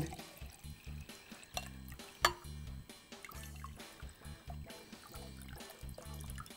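Water poured into a glass beaker, faint under quiet background music with a steady beat, with one sharp click about two seconds in.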